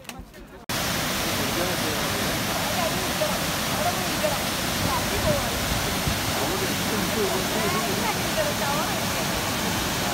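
Mountain waterfall: a steady, full rush of white water pouring down a rocky gorge, starting abruptly about a second in.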